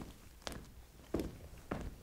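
Footsteps of a person walking on a hard floor: four quiet, evenly paced steps, about two a second.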